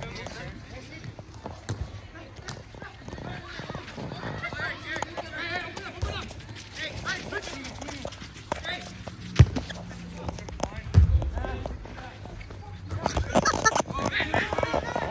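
Players' voices calling and shouting during a football game, with a sharp thud of a football being kicked about nine and a half seconds in and a heavier thump about a second and a half later.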